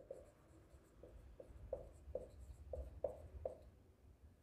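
Marker pen writing on a whiteboard: a string of faint, short strokes, about a dozen, that stop about three and a half seconds in.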